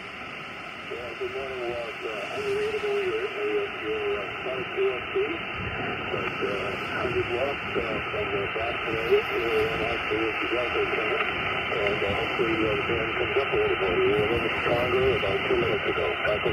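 A weak single-sideband voice from a distant ham station, a 5x3 signal, coming through the Xiegu G90 HF transceiver's speaker on the 20-metre band. It is half-buried in a steady hiss of band noise.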